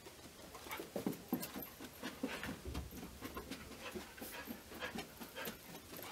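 A dog panting and sniffing in quick, irregular breaths while it searches for a target odor, starting about a second in and running on.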